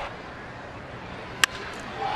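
Stadium crowd murmuring steadily, then one sharp crack of a baseball bat hitting a pitch about one and a half seconds in: contact on a home-run swing.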